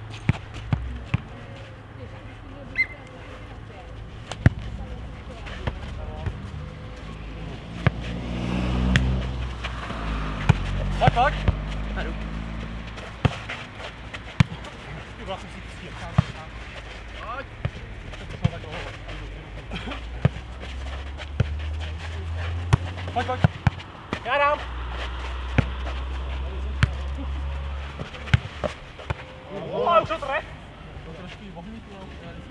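A football being kicked back and forth over a low net in futnet, with sharp, irregular thuds of foot on ball and ball bouncing on the clay court. Players give short shouts between the kicks.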